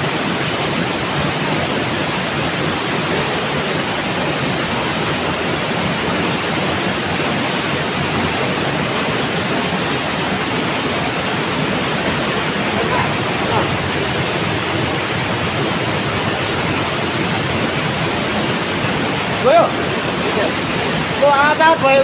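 Steady, loud rush of a rocky mountain stream running over stones, with voices breaking in briefly near the end.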